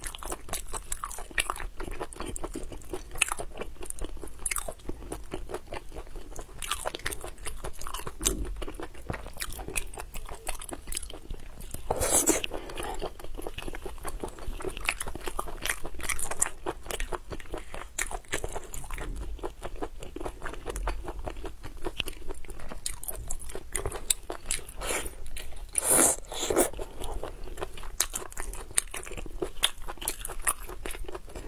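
Close-miked mouth sounds of a person eating sea snails in sauce: a continuous run of small wet clicks and smacks of biting and chewing. There are two louder bursts, about twelve seconds in and again a few seconds before the end.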